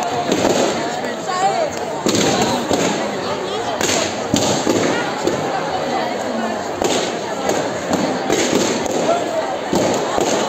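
Indistinct chatter of a large audience in a hall, many voices overlapping, with a few sharp pops at irregular moments.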